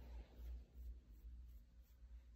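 Near silence, with faint rubbing of a hand stroking a small dog's fur on a fleece blanket.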